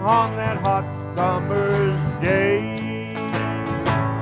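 Live band playing an Irish-style novelty song: strummed acoustic-electric guitar over bass and drums, with a melody line that glides in pitch on top.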